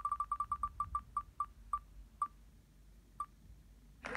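Spinning name-picker wheel on a computer making its short, pitched tick as each segment passes the pointer. The ticks come quickly at first and space out steadily as the wheel slows, the last one a little over three seconds in as it comes to rest.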